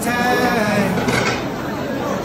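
A sheep bleating: one long, quavering call lasting about the first second and a half.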